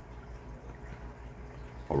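A running aquarium: steady bubbling and trickling water from an air-stone bubble curtain and filters, over a constant low hum.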